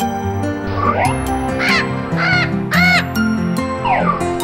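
A cartoon parrot squawking three times in quick succession, the last the loudest, over background music.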